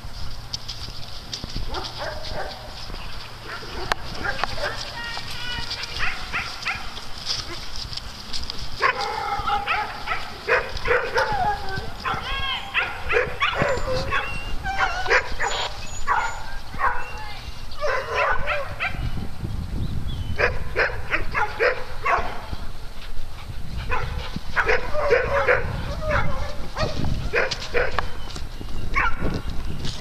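A group of dogs barking as they play, in clusters of short barks that come thick and fast from about nine seconds in.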